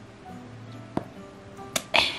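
Soft background music, with a sharp knock about a second in and two louder clicks near the end as a wooden-handled rubber ex-libris stamp is lifted off a paperback's title page and handled on the desk.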